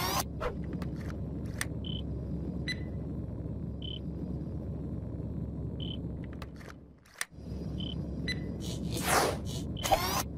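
Looping end-screen sound bed: a steady low rumble with a short high beep about every two seconds. It fades out and cuts back in about seven seconds in, and a whoosh sweeps through near the end.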